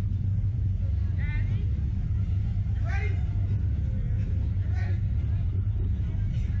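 A steady low rumble throughout, with three short high-pitched voice sounds from the riders about one, three and five seconds in.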